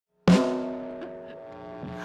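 A punk rock trio's electric guitar, bass and drums striking one chord together about a quarter second in; the chord rings and fades away.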